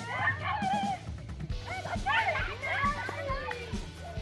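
Several children shouting and calling out excitedly as they play a rough chasing game, over steady background music.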